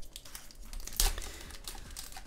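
Foil booster-pack wrapper being torn open, crinkling, with one loud rip about a second in.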